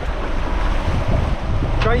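Wind buffeting the microphone over the steady rush of water from a sailing catamaran's wake and the sea alongside, with a voice starting near the end.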